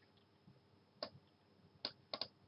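Near silence with two faint, sharp computer mouse clicks, one about a second in and one near the end.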